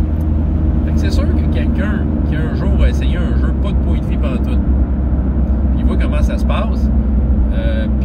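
Steady low rumble of a moving car's engine and road noise, heard from inside the cabin, with a man's voice coming in short snatches.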